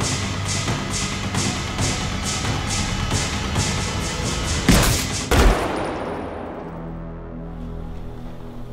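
Action film score with a steady driving beat of about two to three hits a second, broken about halfway by two loud, sharp bangs half a second apart. After the bangs the music thins out and drops in level.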